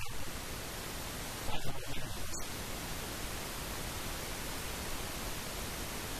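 Steady hiss of static noise, broken by one short, louder sound about a second and a half in.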